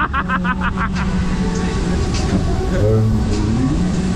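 A person laughing in quick breaths for about a second, then a steady low drone and wind rumble as an aerial ride's plane-shaped car is held high in the air.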